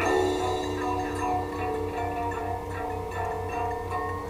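Guitar solo in a slow blues song, with long held notes ringing over a steady low hum.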